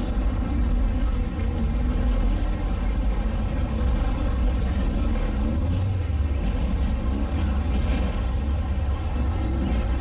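Deep, steady rumble of a car engine and exhaust, with faint voices in the background.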